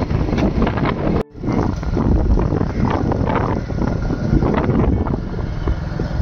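Wind buffeting the microphone over the rumble of a moving vehicle. The sound cuts out sharply for a moment a little over a second in.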